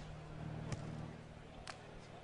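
Two sharp slaps about a second apart, a beach volleyball being struck by hand, over the steady low hum of a stadium crowd.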